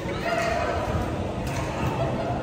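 Badminton players' shoes squeaking on the court floor, with voices in the background.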